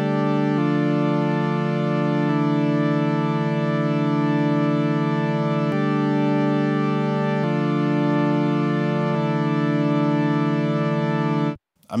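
Software synthesizer playing sustained chords dry, before any filter, modulation or effects are added. The chords are held steady, changing every couple of seconds, and the sound cuts off suddenly near the end.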